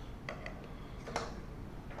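A few faint, light clicks as a long cross-head screwdriver works the end-cap screws of an e-bike battery pack, the last and loudest a little over a second in.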